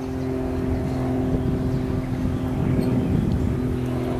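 A steady engine drone holding one pitch, over a low rumble.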